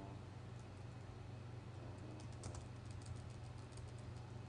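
Faint, irregular clicking of a computer keyboard and mouse as notes are entered into music notation software, the clicks bunching together around the middle, over a low steady hum.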